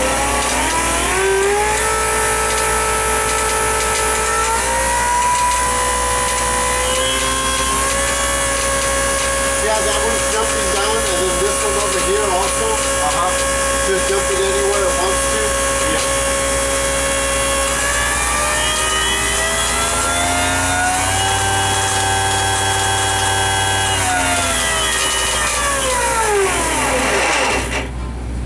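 MSD Mag 44 magneto ignition test bench running and firing a row of spark plugs, giving a pitched mechanical whine. Its pitch rises at the start, steps up twice and holds steady, then falls away near the end as the rig winds down.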